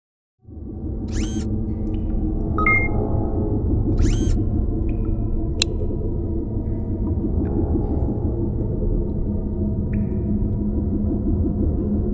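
Trailer soundtrack of electronic sound design: a steady low drone with a rumbling texture, marked by two short high sweeps about one and four seconds in and a sharp click a little later.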